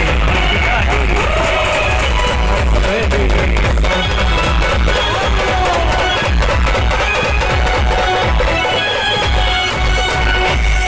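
Loud music played over a DJ truck's large loudspeaker stack, with a heavy pulsing bass beat.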